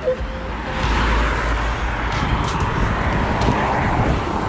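Steady rushing road-traffic noise, with a low rumble in the first couple of seconds and a few faint clicks.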